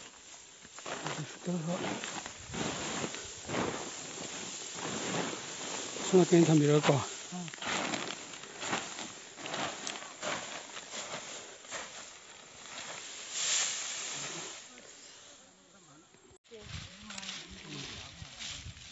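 Dry rice straw and undergrowth rustling and brushing in irregular bursts as bundles of harvested paddy are carried on the back along a brushy path, with footsteps. A person's voice cuts in briefly about six seconds in.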